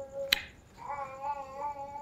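An animal's long, slightly wavering high-pitched call, heard twice: one ends about a third of a second in, and the other starts near the one-second mark and lasts over a second. A single sharp click comes about a third of a second in.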